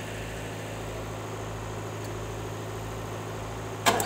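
Car engine idling steadily, a low even hum, while jumper cables charge a flat battery. A sharp knock comes near the end.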